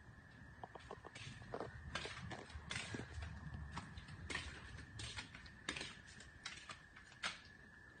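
Faint, irregular footsteps and scuffs on a concrete floor, with a faint steady high-pitched whine throughout.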